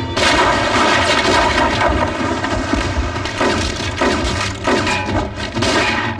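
Movie gunfight sound effects: a dense run of pistol shots and bullet impacts, with several separate shots standing out in the second half.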